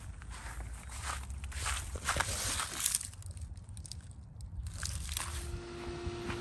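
Footsteps crunching across dry grass, with a low steady rumble underneath. About five seconds in, a steady electrical hum from another outdoor heat pump comes in and holds.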